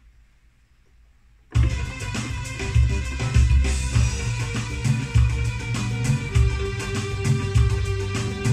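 Arranger keyboard playing a melody over its own built-in drum-and-bass accompaniment, starting abruptly about a second and a half in after a short quiet, with a strong steady beat.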